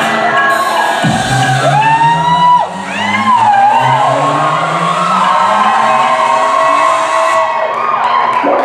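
Recorded music playing in a theatre while an audience cheers and whoops.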